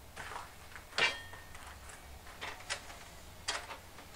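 Light knocks and clatter of wooden boards being handled and set against a workbench. About five short strikes, the loudest about a second in with a brief ring.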